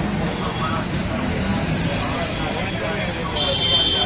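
Busy street traffic: engines of passing auto-rickshaws and motorbikes, with a crowd chattering in the background. A high, steady tone comes in suddenly near the end.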